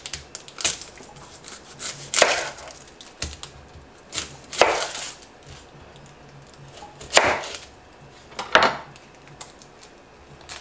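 Chef's knife cutting through an onion and knocking down onto a wooden cutting board: about six separate cuts, irregularly spaced a second or two apart, with lighter taps between them.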